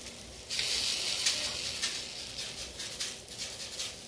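Sprinkles being shaken from a container onto a frosted cake: a hissing, pattering rattle that starts about half a second in and fades out near the end.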